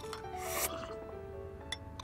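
Soft background music of held notes, with a brief, quiet sip from a teacup about half a second in and a small click near the end.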